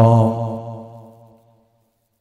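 A man chanting Arabic devotional verse holds the long final note of a line at a steady pitch, then lets it fade away over about a second and a half into silence.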